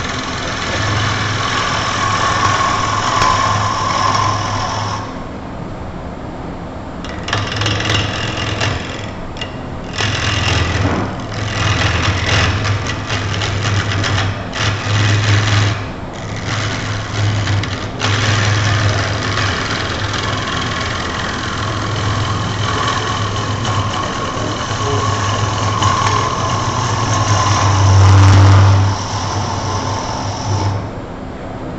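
Wood lathe running while a turning gouge cuts the outside of a spinning wooden vase blank: a rough cutting noise of shavings peeling off, over a steady low hum. The cutting noise drops away briefly about five seconds in and again about halfway through, when the tool comes off the wood, then picks up again.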